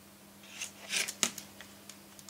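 Handling noise: a brief rustle of hands and fingers on a phone, peaking in a sharp click, followed by a few faint ticks.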